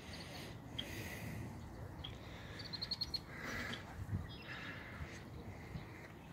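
Faint outdoor ambience, with a small bird giving a quick run of about six high chirps a little under three seconds in.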